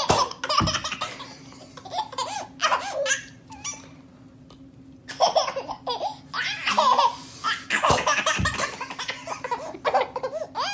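A toddler laughing hard in repeated bursts, with a lull about four seconds in before the laughter picks up again. A couple of soft, low thumps come through, one just after the start and one near the end.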